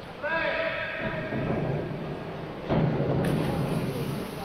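A diver entering the pool water with a splash about three seconds in, sounding in a large echoing indoor pool hall. Earlier, a person's voice calls out briefly.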